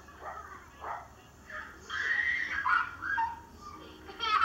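Small dog yipping and whining: several short high-pitched cries, with a longer wavering whine about two seconds in. It is heard as playback from a home video through laptop speakers.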